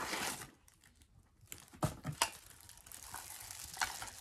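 Clear plastic packaging being handled: a short rustle at first, then a few sharp, separate crinkles.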